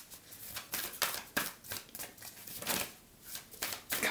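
A deck of oracle cards being shuffled by hand, overhand, with quick irregular slapping clicks as cards drop from one hand into the other.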